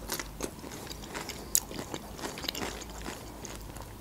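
Close-miked chewing of a bite of food: irregular small mouth clicks, one louder about a second and a half in.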